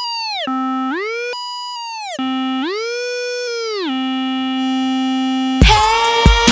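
A lone synthesizer tone in a drumless breakdown of an electronic dance track, sliding up an octave and back down several times, then holding low. The beat and bass crash back in near the end.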